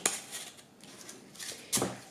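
Scissors snipping through corrugated cardboard: a short snip right at the start and a sharper, louder one near the end, with a quiet stretch between.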